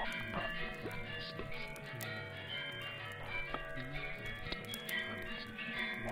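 Layered ambient soundscape with a music-like character: a steady low drone under many held, chiming tones, with scattered light clicks throughout.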